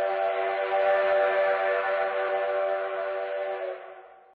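Steam locomotive whistle blowing one long blast, a steady chord of several tones that fades out just before the end.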